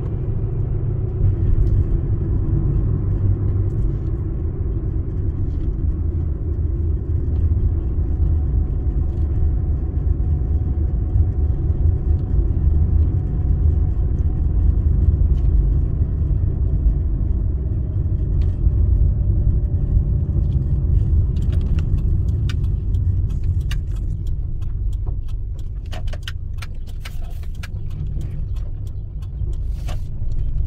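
Car cabin noise while driving slowly: a steady low rumble of engine and tyres on the road, with a faint tone sliding slowly down midway. In the last third a run of small sharp clicks and rattles comes through.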